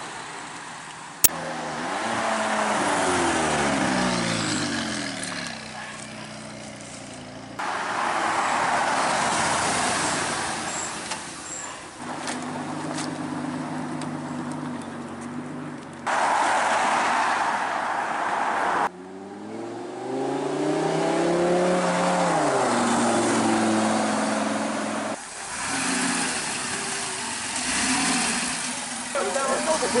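A run of sports cars accelerating away one after another, the first a Bentley Continental GT convertible. Their engines rise and fall in pitch through the gear changes, and each pass breaks off abruptly. There is a single sharp click about a second in.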